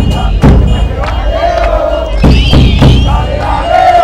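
A crowd of football supporters chanting together over a beating drum, with drum hits about twice a second that pause briefly in the middle.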